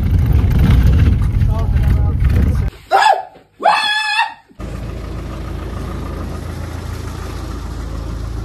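Low, heavy rumble of a bus riding along. It cuts off for two loud, excited yells from a man, then gives way to a steady low vehicle engine hum.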